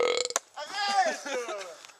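Young men's voices: a short loud call at the start, a sharp click about a third of a second in, then a string of drawn-out vocal sounds that fall in pitch, laughing and fooling about.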